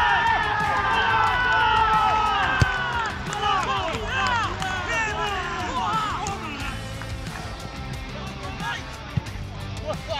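Players' voices shouting and cheering on the pitch after a goal: several long yells overlap at first, then short shouts follow, thinning out after about six seconds.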